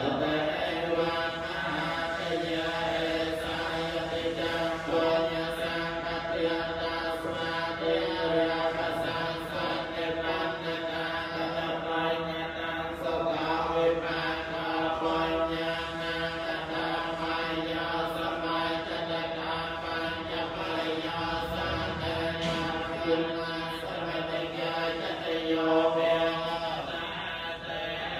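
Theravada Buddhist monks chanting a Pali blessing together, a continuous recitation held on a nearly steady pitch without pauses.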